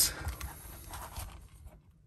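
Faint rustling, scraping and light clicks of hands handling a plastic action figure and its gun accessory, dying away near the end.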